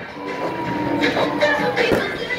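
Massed marching band playing: brass holding long chords, one note sliding slightly down, with drum hits about a second in and near the end.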